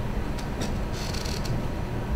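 Steady low room rumble with a few light clicks and a brief rustle about a second in, the sound of papers and small objects being handled at a meeting table.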